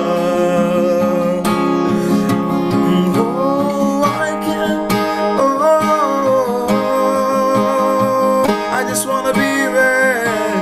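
Acoustic guitar playing a slow worship song while a man sings it in long, held notes that slide up between phrases.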